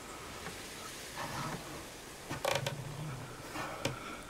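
A few short creaks, the loudest about two and a half seconds in, over a faint steady high tone.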